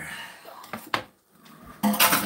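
A drinking glass set down on a stone countertop: a light clatter dying away, then a single sharp clink about a second in.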